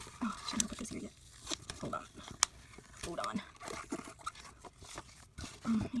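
Paper planner pages and stickers handled on a desk: rustling, with a few sharp clicks, and short low murmured vocal sounds in between.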